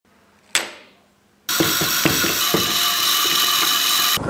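A single sharp click about half a second in. Then, from about one and a half seconds, a small hand-cranked generator's gears whir steadily with a rapid ratcheting.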